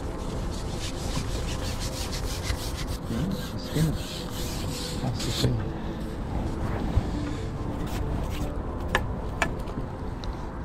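A carbon fishing pole being shipped back while a hooked fish is played: its sections slide and rub with a rasping noise. There is a run of fast clicks through the first half and two sharp clicks near the end.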